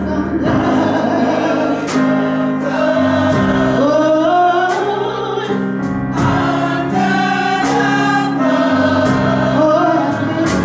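Gospel choir singing held notes that slide up into pitch, accompanied by keyboard and a drum kit, with cymbal crashes every second or two.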